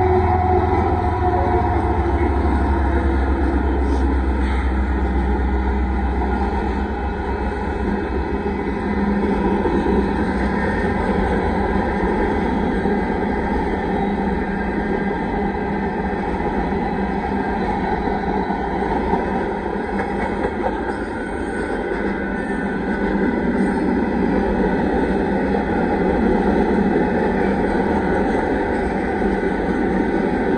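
Freight train passing close by. The diesel locomotives' engines run by in the first few seconds, then a long string of hopper, tank and autorack cars rolls past with a steady rumble of wheels on rail.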